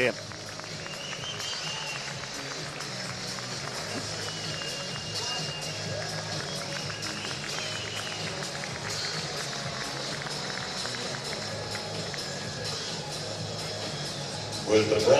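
Arena background music playing over steady crowd noise in a large hall.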